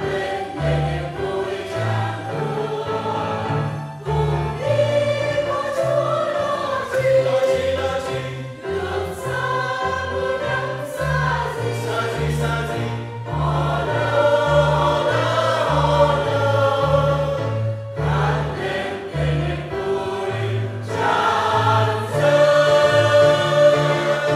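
Mixed choir of men and women singing a Vietnamese Catholic hymn in parts with piano accompaniment, the piano's low notes moving in a steady pattern beneath the voices.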